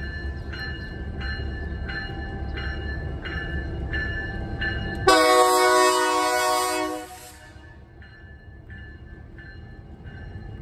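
Approaching diesel locomotive sounding its horn in one blast of about two seconds, a little past halfway. Under it a bell rings evenly, about one and a half strokes a second.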